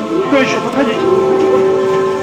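Human voices: a brief stretch of voice, then one voice holds a long, steady note from about a second in, over other sustained voices.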